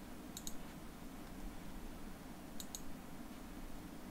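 Computer mouse clicking twice, each time a quick pair of sharp clicks, over a steady low hum of room tone.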